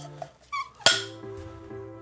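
A film clapperboard's clapstick snapped shut once, a single sharp clack less than a second in, over soft background music.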